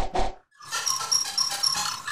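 Sound effects for an animated logo: the tail of a short hit, then from about half a second in a quick run of bright, repeated pitched notes about four a second.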